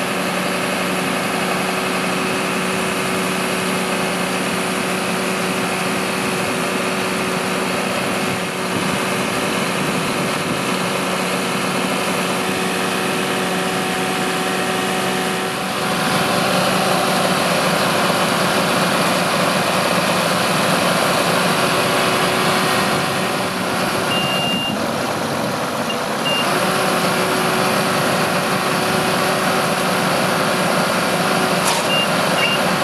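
Diesel engine of a fire-brigade turntable-ladder truck running steadily at a raised idle while the ladder is worked, with a hum that steps up in loudness about halfway through. A couple of short high beeps sound near the end.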